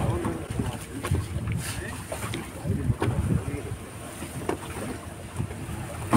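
Wind buffeting the microphone over the low rumble of a fishing boat at sea, with the rustle and knocks of wet net being hauled in by hand and faint crew voices.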